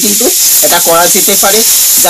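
A person talking in Bengali, in short phrases with brief gaps, over a loud, steady hiss.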